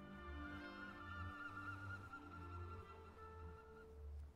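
Quiet orchestral film score played backwards, with a wavering high tone over held low notes.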